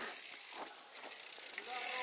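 Mountain bike's rear freehub ticking as the bike is wheeled along by hand, with a faint voice near the end.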